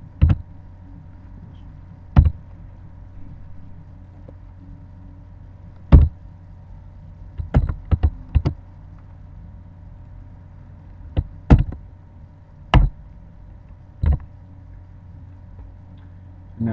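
Scattered sharp clicks of a computer keyboard and mouse as a spreadsheet formula is entered: about a dozen clicks, some single and some in quick runs, over a steady low electrical hum.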